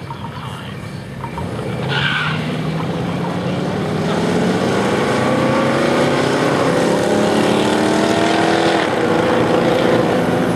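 Two hot rods accelerating hard off the drag strip start line, their engines rising steadily in pitch as they pull away down the track. The pitch drops suddenly at a gear change near the end.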